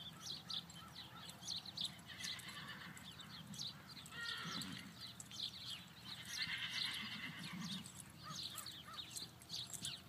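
A horse whinnying twice around the middle, over the soft hoofbeats of a horse loping on arena dirt.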